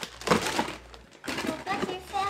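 Foil blind-bag sachets being handled and dropped into a cardboard display box, a few short crinkles and knocks, followed by brief low murmured talk.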